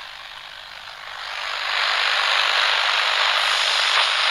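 A steady rushing hiss of noise that starts suddenly out of silence and swells over the first two seconds, then holds steady. It has no tune or voice in it.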